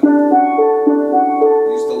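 Steel pan struck with mallets: about six ringing notes in quick succession, roughly three a second, picking out the notes of a D major chord (D, F sharp, A).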